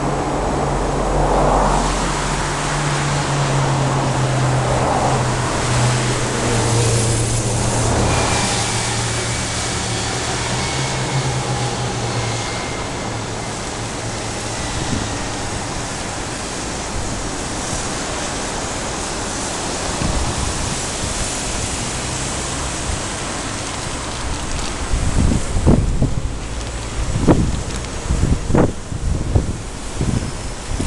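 Road traffic on a city street, with a low steady engine drone for about the first twelve seconds. Irregular gusts of wind buffet the microphone in the last few seconds.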